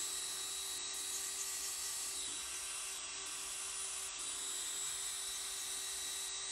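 Electric nail drill (e-file) running at a steady speed, its bit working along the cuticle of a fingernail during a hardware manicure. It gives an even, unchanging hum with a light hiss.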